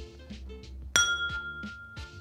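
A whiskey tasting glass clinks once, sharply, about a second in, then rings on with a clear, sustained tone.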